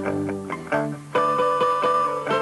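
Rock band playing an instrumental gap between sung lines, with guitar chords in front. The sound thins out briefly about a second in, then the full band comes back in.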